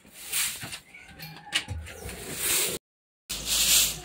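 A stiff coconut-rib broom swishing over a concrete floor in short strokes. The sound cuts out completely for about half a second near the end.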